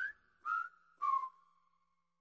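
Whistled jingle: three short whistled notes at about the same pitch, the first sliding up, the second rising slightly, and the last dipping a little and held as it fades, with silent gaps between them.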